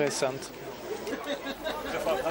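Background chatter of many people talking at once, after a man's voice briefly at the start.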